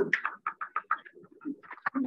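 A person laughing in a run of quick, short bursts, several a second.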